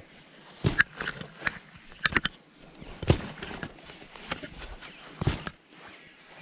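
A digging spade being driven into dry, rock-hard pasture turf to cut out a target: a string of irregular thuds and scrapes, a few sharp strikes standing out.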